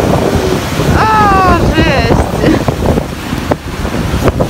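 Heavy surf breaking on rocks, with strong wind buffeting the microphone. A brief high call falls in pitch about a second in, and another shorter one follows.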